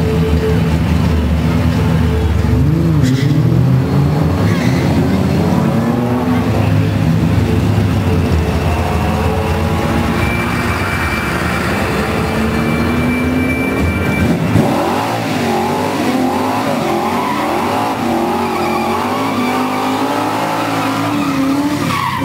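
Vortech-supercharged, fuel-injected 360 V8 of a Charger drag car revving in blips as it rolls forward, then held at high revs through a burnout, with tyres squealing in a warbling way over the last third.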